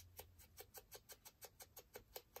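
Foam ink blending tool dabbing ink onto the edges of a small paper cut-out: faint, quick, even taps about five a second.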